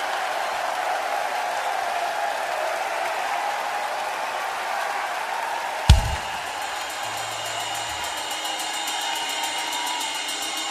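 Arena concert crowd cheering in a steady wash of noise between songs. About six seconds in, one sharp loud thump with a short low boom, after which faint sustained amplifier tones hum over the crowd.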